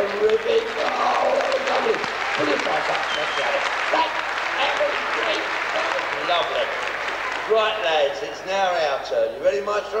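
Audience clapping, a dense patter of many hands with voices mixed in. The clapping thins about two-thirds of the way through as voices and singing take over again.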